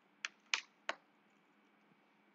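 Three sharp clicks of computer keyboard keys being pressed, spread over about the first second.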